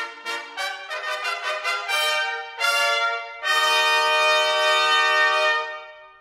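Brass music, trumpet-led: a phrase of short notes, then one long held note that fades away near the end.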